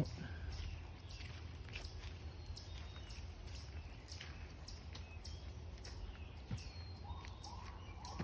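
Footsteps crunching through dry fallen leaves at a walking pace, with faint bird chirps. Near the end a distant siren starts, rising in pitch.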